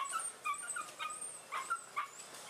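Dogs whimpering and yipping in a quick series of short, high-pitched calls, about six in two seconds.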